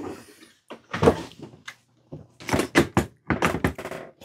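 A door being shut with a thud about a second in, followed by a run of sharp knocks and clatters.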